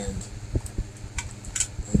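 Small clicks and rustles of hands pushing bundled wires and plastic parts into an RC crane's opened cab, a few soft ticks spread through the moment. Under them runs a steady low hum.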